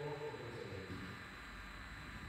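Faint speech from a man's voice that fades out about halfway through. A faint steady high-pitched tone runs underneath.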